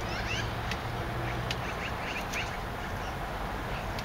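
Birds chirping faintly in short, quick calls over a steady low background hum, with a few faint ticks.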